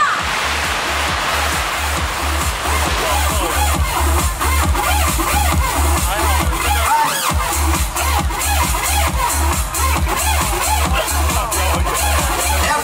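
Electronic dance music played loud from a DJ's decks over a stage sound system. A heavy kick drum beats about twice a second, drops out briefly about seven seconds in, then comes back.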